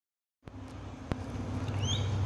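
Silence for about half a second, then steady outdoor background noise with a low rumble, a single click, and a short high rising chirp near the end.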